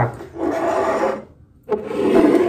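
Loud rasping scrape and crinkle of a plastic cake tray and its packaging being handled, in two long strokes with a short pause between them.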